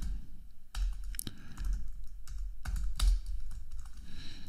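Typing on a computer keyboard: a handful of separate key presses spread unevenly over a few seconds, over a faint low hum.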